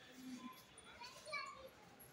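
Faint, indistinct background chatter of voices, children's voices among them, in short scattered snatches.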